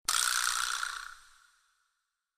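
An editing sound effect: a sudden hissing hit that fades away over about a second and a half.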